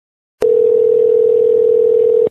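Telephone ringback tone on the line: one steady ring of about two seconds that starts shortly in and cuts off sharply, the sound of the call ringing before it is answered.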